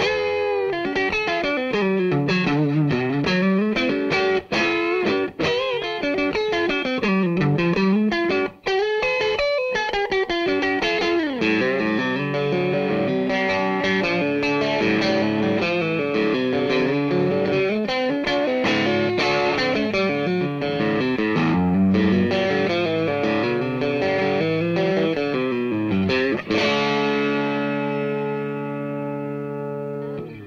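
Electric guitar played on the middle single-coil pickup of a DiMarzio True Velvet set, with Alnico 2 magnets, through a Vox AC15 valve amp turned up for a little grind along with the clean tone. It plays a run of changing notes and chords, ending on a chord that rings out for the last few seconds.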